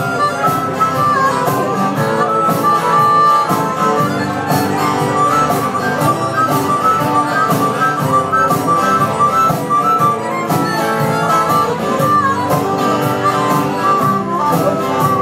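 Live harmonica solo played through a microphone over several strummed acoustic guitars, the harmonica carrying a bending melody above a steady rhythm.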